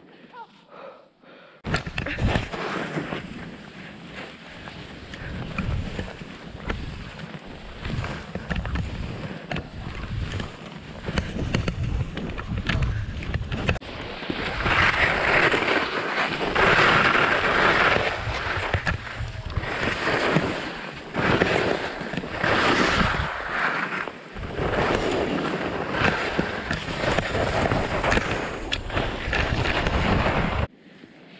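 Wind buffeting an action camera's microphone together with the rushing hiss of skis running through snow at speed, starting about two seconds in after a quieter moment and swelling louder in the second half.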